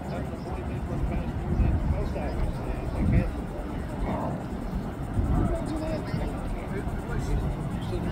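Indistinct voices talking over a steady low rumble of outdoor background noise.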